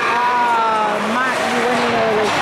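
Shouting voices in a hockey rink: a long call falls in pitch over the first second, followed by shorter calls, over steady rink noise.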